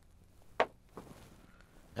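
A short click about half a second in and a fainter one about a second in: a guitar cable's quarter-inch plug being pulled out of a Fender Stratocaster's output jack.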